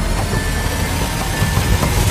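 Dark horror soundtrack rumble: a loud, dense, steady low rumble with faint held tones above it.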